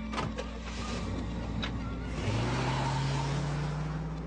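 A car door thump, then a car engine revs and the car accelerates away with a rush of road noise, its engine note rising from about halfway through.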